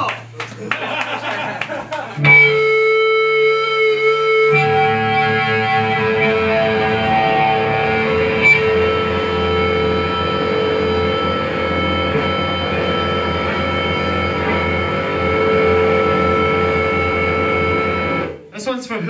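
Distorted electric guitar and bass holding a sustained chord that rings on steadily with no beat. It starts about two seconds in, the notes shift about four and a half seconds in, and it cuts off right at the end.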